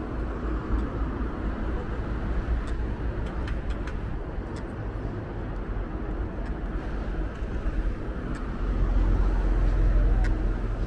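City street traffic noise: cars passing on the road, a steady rumble that grows louder near the end.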